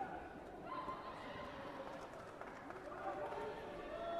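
Indistinct voices and calls echoing around a large sports hall, with no single speaker clear, over a steady murmur of the crowd.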